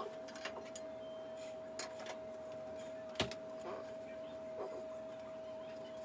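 A few light clicks and taps of a toothpaste tube and toothbrush being handled, the sharpest about three seconds in, over a faint steady tone.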